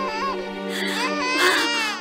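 A newborn baby crying in short, wavering wails, the longest near the end, over soft background music.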